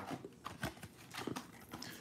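A few faint, soft ticks and light rustles of a trading-card pack being handled on a table.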